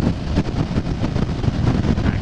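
Motorcycle at highway cruising speed, about 100 km/h: steady engine and road noise under heavy wind rush on the microphone.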